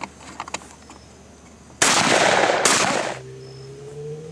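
Two shotgun shots less than a second apart, each followed by a long echoing tail: a double fired at a pair of thrown clay targets.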